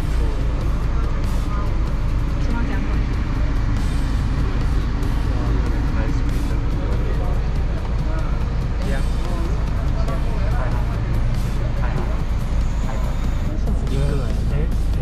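Steady low rumble of a car idling, heard from inside the cabin, under background music and faint voices.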